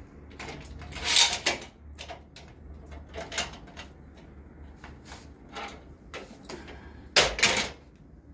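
A ToughBuilt folding sawhorse's metal legs and locking mechanism clacking as it is opened and handled: a loud clack about a second in, a few lighter knocks, then another loud pair of clacks near the end.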